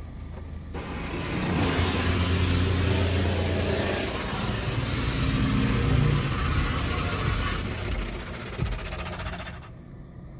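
PDQ ProTouch Tandem soft-touch car wash at work, heard from inside the car: brushes spinning and scrubbing against the glass and body with water spraying, over a low machine hum. It starts about a second in and falls away sharply near the end.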